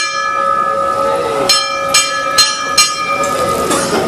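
Small brass temple hand bell rung by hand, struck repeatedly with its bright metallic tone ringing on between strikes. In the second half comes a quick run of about four strikes, roughly two a second.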